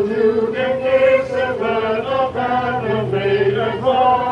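Choir and wind ensemble, with a trombone among the instruments, performing a slow anthem in sustained, held notes.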